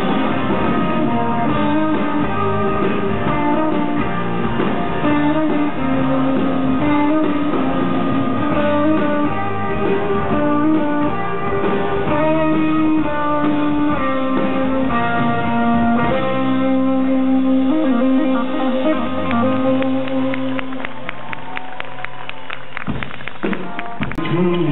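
A live rock band plays an instrumental passage on acoustic and electric guitars. About two-thirds through, the sound thins out, and near the end there is a fast, even ticking rhythm.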